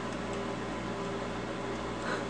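Microwave oven running with a steady hum and fan noise.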